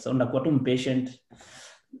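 A man's voice speaking over a video call, then a short audible intake of breath near the end.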